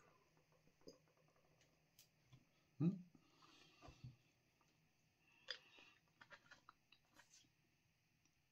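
Faint mouth sounds of someone tasting a hot sauce just sipped from the bottle: a swallow about three seconds in, then scattered lip smacks and small clicks over near silence.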